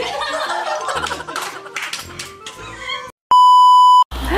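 Background music with women laughing, then about three seconds in it cuts to a loud, steady, high test-tone beep: the tone that goes with a TV colour-bars test card.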